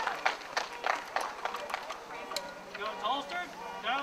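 Faint background voices of people at a shooting line, with scattered light clicks and knocks during the first second and a half.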